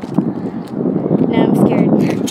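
Loud, dense rustling and handling noise, with a brief high-pitched voice about one and a half seconds in.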